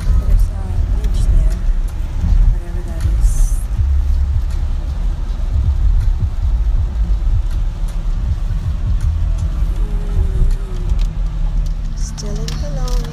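Steady low rumble of a car's road and engine noise heard from inside the cabin while driving on a wet road, with a brief high hiss about three seconds in.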